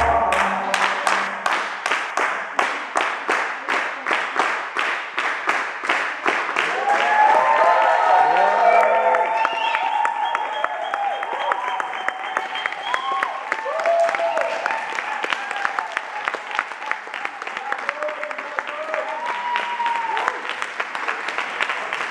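Crowd clapping in unison, about three claps a second, with whoops and cheering voices over it. The samba music cuts off just as the clapping takes over.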